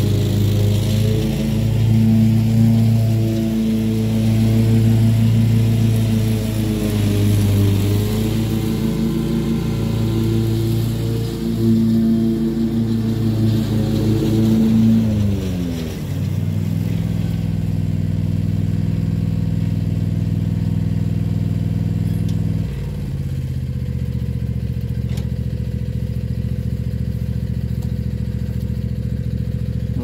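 Ride-on zero-turn mower engine running at working speed, its pitch gliding down about halfway through as it throttles back, then stepping down again to a lower steady run about three quarters of the way through.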